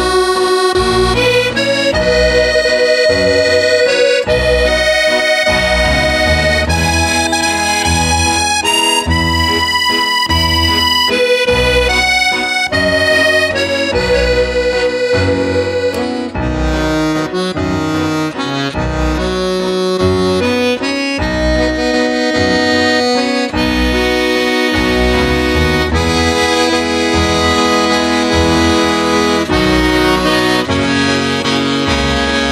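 Serenellini button accordion playing a slow tune: a held, sustained melody over regular low bass-and-chord pulses.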